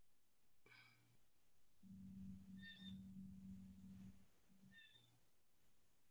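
Near silence: faint room tone of an online meeting, with a brief faint low hum lasting about two seconds in the middle.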